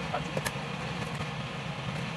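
Steady low hum of a kitchen range hood extractor fan running over a gas stove, with a faint short click about half a second in.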